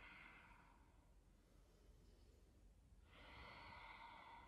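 Near silence, with a soft, long breath out of a person in a seated forward fold starting about three seconds in.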